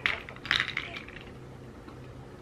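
Tableware clinking: one sharp clink, then a short cluster of clinks about half a second later.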